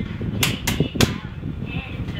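Three sharp hand claps in quick succession, about a quarter of a second apart, over a low background murmur of voices.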